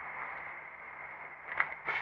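Steady low hiss of the recording's background noise with a faint hum underneath, and a brief faint sound about a second and a half in.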